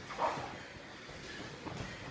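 Jiu-jitsu grappling on foam mats: gi cloth rustling and bodies shifting, with one short, louder sound about a quarter second in.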